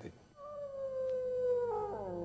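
A wolf howling: one long call that begins about a third of a second in, holds its pitch while slowly falling, then slides lower near the end.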